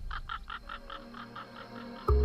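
Eerie sound effect: a quick run of short pulses, about six a second, fading away over a faint low hum.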